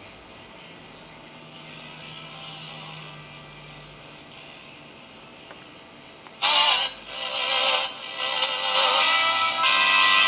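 AM radio reception from a Modern Radio Laboratories No.18 crystal-transistor set, played through a small amplified speaker while the set is tuned by hand. At first there is faint hiss and a low hum between stations. About six and a half seconds in, a station's music comes in suddenly and loud.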